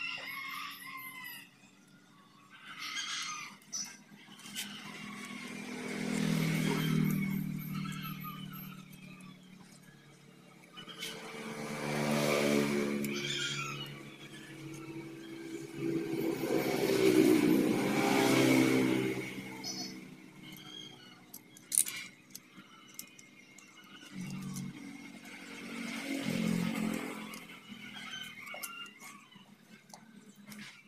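Motor vehicles passing by one after another, four times, each engine sound swelling and fading over a few seconds, with scattered sharp clicks between them.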